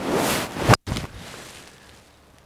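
Callaway Big Bertha 3 wood (16° loft) hitting a golf ball off the fairway: a rising whoosh of the downswing, then one sharp crack of the clubface on the ball about three quarters of a second in. The strike is solid, the ball coming off the face fast.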